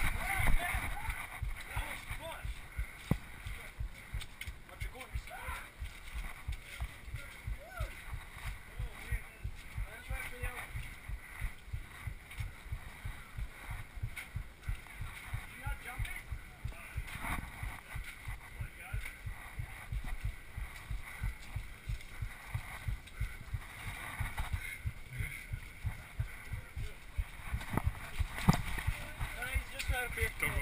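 Footsteps on dirt picked up by a body-worn action camera: a steady run of low, muffled thuds, about two or three a second, with indistinct voices.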